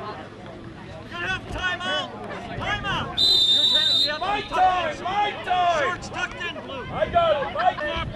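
Players and spectators shouting and calling out during a football play, with one steady, shrill referee's whistle blast of about a second a little past three seconds in, marking the play dead.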